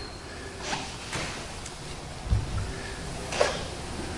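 Quiet room tone with a few faint rustles and a soft low thump a little past halfway.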